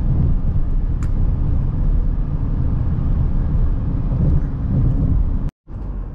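Road noise inside a moving car at speed: a steady low rumble of tyres and engine heard through the cabin. It breaks off suddenly near the end.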